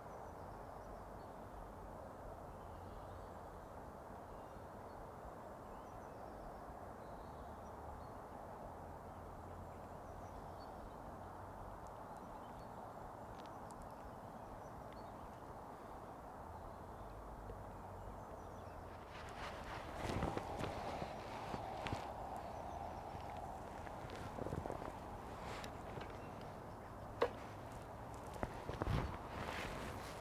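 Faint, steady rush of flowing river water. From about two-thirds of the way in come rustling and a few sharp clicks and knocks as the angler moves about and handles his rod and tackle on the bank.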